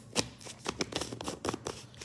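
A plastic powder tub being handled and its lid put back on: a run of irregular clicks and scrapes.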